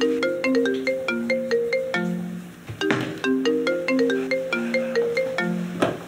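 An iPhone ringtone ringing for an incoming call: a repeating melody of short, bright notes. Brief rustling noises come about three seconds in and again near the end.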